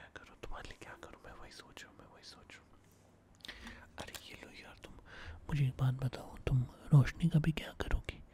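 A man whispering close to the microphone, passing into soft voiced speech in the second half, which is louder.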